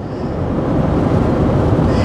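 Steady road noise inside a vehicle cabin at highway speed: a low tyre and engine rumble with some wind, growing slightly louder over the two seconds.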